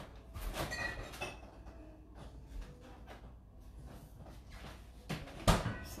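Faint knocks and handling sounds of a kitchen refrigerator or freezer door as ice is fetched, then two sharper knocks near the end.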